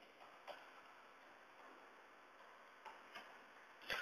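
A few faint, scattered clicks of computer keyboard keys being typed, in otherwise near silence.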